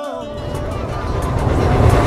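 A rising whoosh that swells steadily louder with a low rumble underneath, a transition sound effect in a music soundtrack. A held music note fades out at the start.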